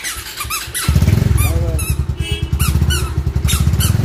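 Motorcycle engine starting about a second in, then idling with a fast, even low beat.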